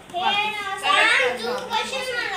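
Young children talking in high voices.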